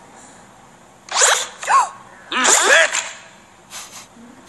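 A woman's voice crying in short, high, wavering sobs: two quick ones about a second in, then a longer one a little past the middle.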